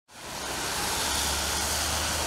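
Street traffic noise: a steady hiss of vehicles on a wet road with a low engine hum underneath, fading in over the first half second.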